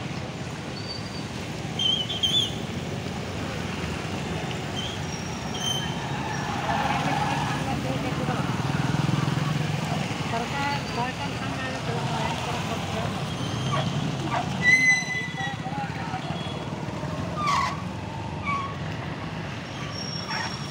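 Street traffic: motorcycles and cars running past on a rough road, a steady low rumble, with a short high beep about 15 seconds in.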